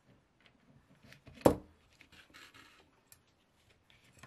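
Hand-sewing a baseball stitch in leather wrapped on a wooden handle: small clicks and rustles of needles and waxed linen thread being worked through the stitch holes. There is one sharp knock about one and a half seconds in, and a short rasp of thread drawn through the leather just after.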